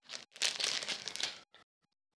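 Crinkling of a foil trading-card pack wrapper as it is pulled apart by hand. The rustle lasts about a second and a half, then stops.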